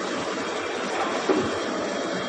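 Film wrapping and heat-shrink packaging machine for beer cans running, a steady mechanical noise with a short knock a little past halfway.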